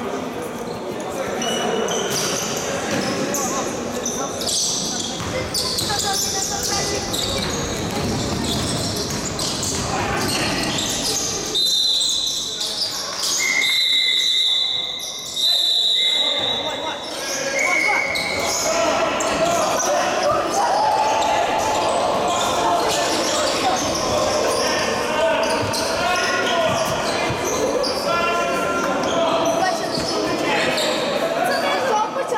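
Basketball game in an echoing sports hall: the ball bouncing on the court, with players' voices and shouts throughout. Several short high-pitched tones sound in the middle.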